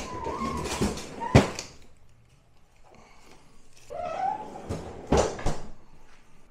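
A stainless French-door refrigerator's freezer drawer being handled: a few sharp knocks, the loudest about a second and a half in, and two short high squeaks, the second rising in pitch about four seconds in.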